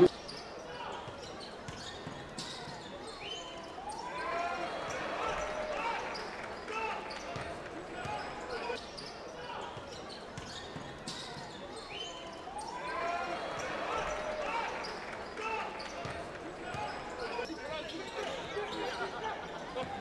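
Live court sound of a professional basketball game: sneakers squeaking on the hardwood, the ball bouncing, and voices of players and crowd in the arena.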